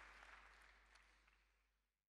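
Faint audience applause with a few separate claps standing out, fading away steadily.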